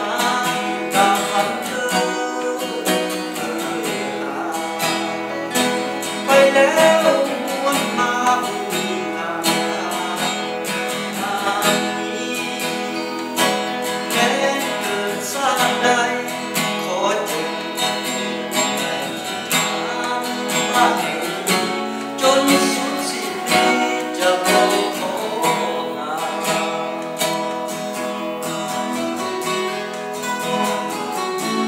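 Two steel-string acoustic guitars strummed together, with a man singing over them in places.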